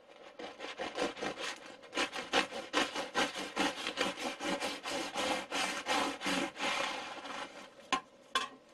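A serrated bread knife sawing back and forth through a crusty baguette on a wooden board: a steady run of scraping strokes, several a second, that begins just after the start and thins out near the end.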